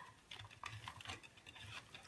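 Faint rustling and crackling of jute mesh and burlap ribbon being handled and scrunched down into a Bowdabra bow maker, a run of small irregular scratches and ticks.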